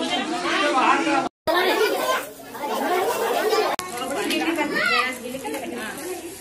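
Overlapping chatter of several people talking at once, with no single clear voice; it breaks off for an instant about a second in.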